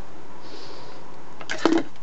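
Steady background hiss, with a faint soft rustle about half a second in and a voice starting near the end.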